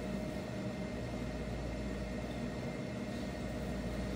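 Steady low hum of a lecture room's ventilation, with a faint constant tone running through it and no other events.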